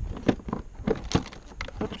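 Motorcycle side case latch and release lever being worked by hand to unlock the hard-plastic pannier from its mount: a string of sharp clicks and knocks.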